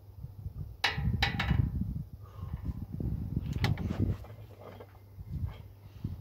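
Several sharp knocks, three close together about a second in and more a couple of seconds later, over a low, uneven rumble, as a wooden strongman log is gripped and shifted on a tractor tire before a press.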